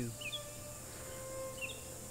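Outdoor ambience: a faint steady hiss with two short bird chirps, one just after the start and one near the end.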